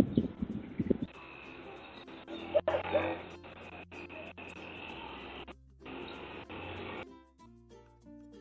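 Outdoor ambient sound picked up by a Ring Spotlight Cam's microphone. The sound is thin and muffled, with a few loud low pulses in the first second and several short cuts to silence. About a second before the end, background music takes over.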